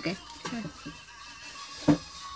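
A single sharp knock just before the end, with faint voices earlier on.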